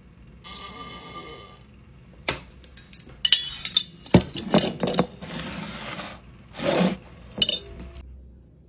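Glass jar being handled and its lid closed: a string of sharp clinks and knocks of glass, loudest in the middle, with a last clink near the end. A brief high-pitched tone sounds about half a second in.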